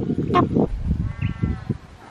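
Regular knocks, about two a second, that stop about half a second in. Then, about a second in, comes a single drawn-out, bleat-like animal call lasting just over half a second.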